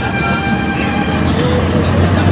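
City street traffic: a large vehicle's engine running close by, with a steady horn-like tone held for about the first second.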